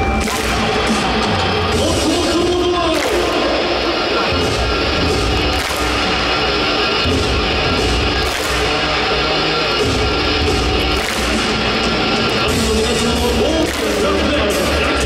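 Loud music over a ballpark's sound system, with a crowd clapping in unison roughly once a second in time with a big bass drum.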